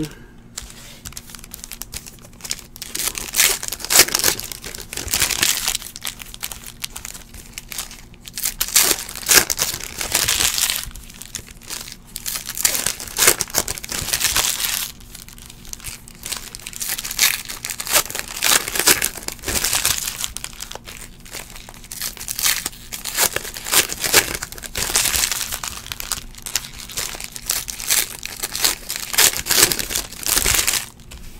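Foil trading-card pack wrappers of 2015-16 Panini Prizm basketball being torn open and crinkled, in irregular bursts through the whole stretch, with a faint steady low hum underneath.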